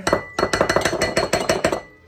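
Metal serving spoon clinking and scraping against a ceramic dish while scooping baked dip: a quick run of sharp clinks, about eight a second, for over a second.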